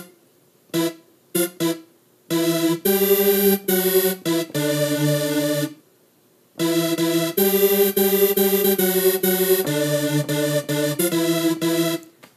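Piano sound from the iMaschine app on an iPad, played by tapping its on-screen keyboard. A few short single notes come first, then longer notes and chords, with a brief pause about halfway through.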